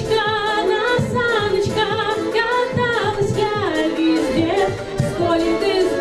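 A girl singing into a microphone over a recorded backing track with a steady beat, her held notes wavering with vibrato.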